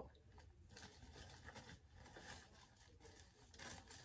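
Near silence with faint, scattered rustling: small items being handled and moved about in a purse.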